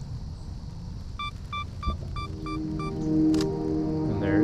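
A camera's self-timer beeps in a quick run of seven short, even beeps, about four a second, as it counts down a two-second delay. The shutter then fires with a single click, over a low rumble of outdoor noise.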